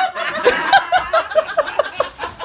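People laughing in a quick run of short ha-ha bursts, about six a second, starting about half a second in.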